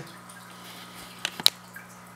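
Aquarium background: faint trickling water and a steady low hum, with two sharp clicks close together just past the middle.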